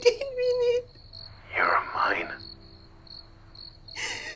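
Crickets chirping steadily in the background, a high pulsing chirp about three times a second, under a woman crying: a drawn-out sob at the start and a ragged gasping breath about a second and a half in.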